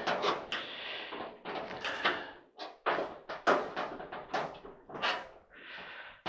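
Irregular knocks, clunks and scrapes from a clothes dryer's sheet-metal cabinet being pushed and worked by hand while trying to line up a screw.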